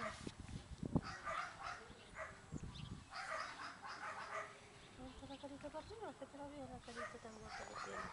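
Indistinct talking in the background, with a few low knocks and bumps; the sharpest comes about a second in.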